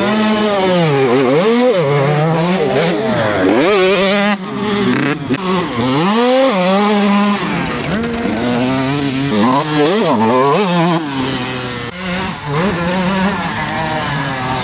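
Off-road motorcycle engine revving hard, its pitch climbing and dropping over and over as the throttle is opened and shut on the dirt trail.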